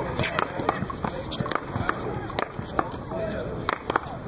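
Sharp, irregular knocks of paddleball play, a hard rubber ball struck by paddles and bouncing off wall and concrete, several a second, under people talking in the background.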